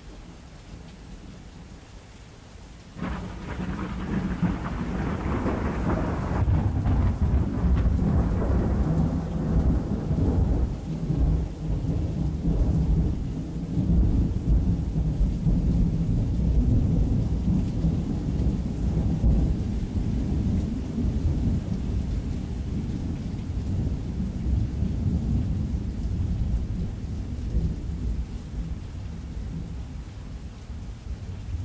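Rain falling steadily. About three seconds in, a sudden thunderclap breaks and rolls into a long, low rumble that carries on to the end.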